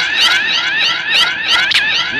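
An electronic siren-like warble: short rising sweeps repeating about four times a second, slowly climbing in pitch.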